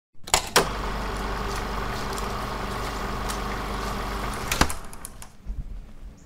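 A car engine running steadily, with a couple of clicks near the start and a sharp knock about four and a half seconds in, after which the sound drops away.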